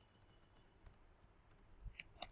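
Faint computer keyboard key presses: a few soft, irregularly spaced clicks as text is deleted with the backspace key.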